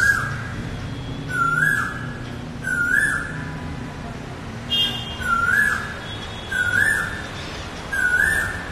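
A bird calling: a short clear note that jumps up and holds, repeated about every second and a half, with a brief higher-pitched call in the middle.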